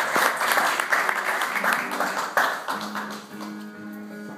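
Small audience applauding at the end of a song, the clapping thinning out and fading, while a guitar rings a few held notes from about halfway through.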